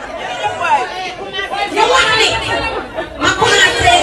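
Several people talking and calling out over one another at close range, getting louder about three seconds in.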